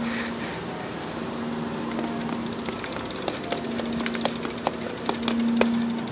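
A BMX bike being walked down concrete stairs: a continuous rattle with scattered sharp clicks and knocks, over a low hum that comes and goes.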